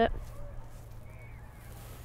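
Quiet outdoor background with a faint, steady low hum, just after the last spoken word at the very start.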